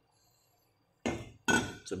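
A Chinese cleaver set down on a wooden cutting board: after about a second of quiet, a knock and then a short ringing clink of the steel blade.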